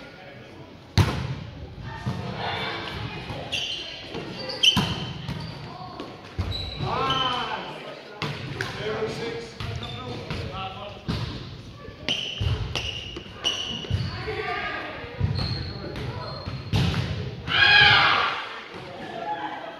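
Indoor volleyball play in a gym: several sharp smacks of hands and arms hitting the ball, short high squeaks of sneakers on the wooden floor, and players calling out, all echoing in the hall.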